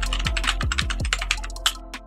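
Typing sound effect, a quick run of key clicks as the text types itself out, over electronic music with deep bass hits that drop in pitch. The clicks thin out near the end.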